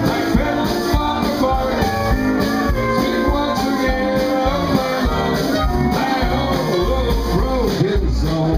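A western swing band playing live, with electric and acoustic guitars over drums. A fiddle comes in near the end with sliding, wavering notes.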